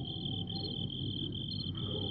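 Crickets trilling: a steady, high-pitched trill that breaks briefly about once a second, over a low background hum.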